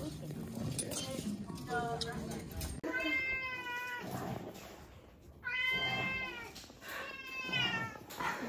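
A cat meowing three times, each meow drawn out for about a second, starting about three seconds in. Before that, indistinct background noise.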